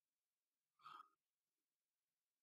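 Near silence, broken by one faint, short breath from the speaker just under a second in.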